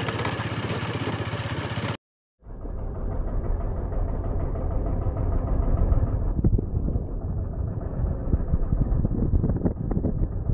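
A motorcycle running with road and wind noise as it is ridden along. About two seconds in the sound drops out for a moment, then comes back duller, with a heavy low rumble.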